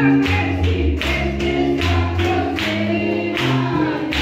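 Lively gospel worship music from a church service: a group of voices singing over low bass notes and a steady beat.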